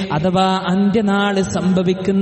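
A man chanting Arabic in the drawn-out, melodic style of Quran recitation. He holds long, steady notes, with short breaks between phrases.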